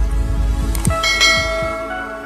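Short intro jingle for a logo animation: a deep bass hit with quick falling sweeps, then, about a second in, a bell-like chime that rings out and slowly fades.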